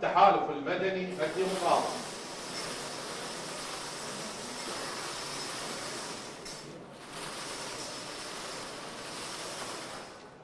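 Wire lottery drum being turned by hand with numbered balls tumbling inside, a steady rattling hiss with a short pause a little past halfway.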